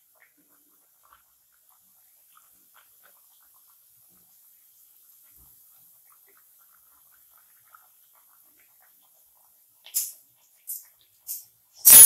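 Papdi frying in hot oil in a kadai: mostly near silence, then from about ten seconds in four short sharp hissing crackles of spitting oil, the last and loudest near the end.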